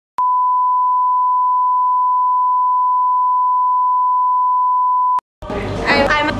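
Steady pure test tone: one unchanging beep held for about five seconds, with a click as it starts and as it stops, like the line-up tone at the head of a video tape. Voices over music come in near the end.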